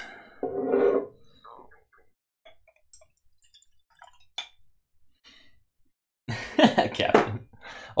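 A man's short throaty vocal sound about half a second in. Faint clicks of glassware follow as whiskey is poured from one glass into another, with one sharper glass clink about four seconds in. A man's voice comes back loudly near the end.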